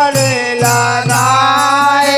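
Bundeli Ramdhun devotional music: a man's voice slides down and then holds a long note over a harmonium, with dholak drum strokes and small hand cymbals keeping the beat.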